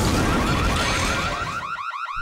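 Cartoon explosion sound effect: a sudden loud burst of noise that fades slowly, with a fast warbling tone repeating several times a second that climbs higher near the end.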